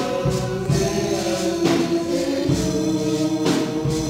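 Live Catholic worship song from a small band: a man singing through a handheld microphone and PA over amplified instruments, with held notes and a steady percussion beat.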